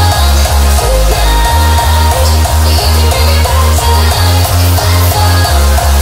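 Happy hardcore dance music playing loud over a club sound system, with a fast, steady kick drum at about three beats a second under sustained synth notes.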